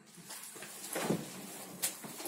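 Faint handling and shuffling noises from work at a grape vat, with a sharp knock near the end.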